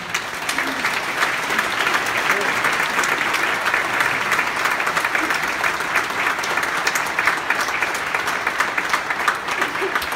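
Large audience applauding at the end of a song, the clapping breaking out suddenly and holding steady and loud.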